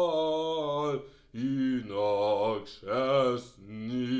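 A man singing unaccompanied low, held notes in the style of Russian Orthodox bass chant, several sustained notes with a short break about a second in.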